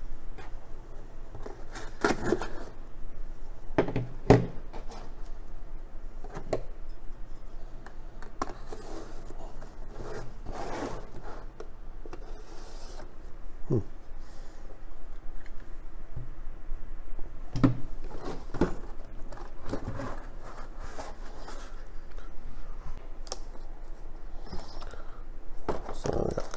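A folding knife slitting the tape and scraping along the seams of a cardboard box, with irregular scraping and rubbing and a few sharp knocks as the box is handled and opened.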